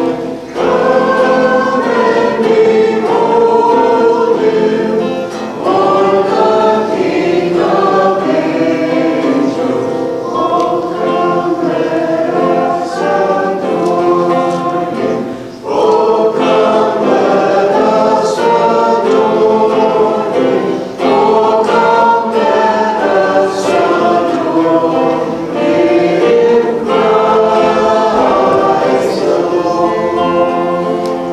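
A choir singing a hymn in long sung phrases, with brief pauses between phrases.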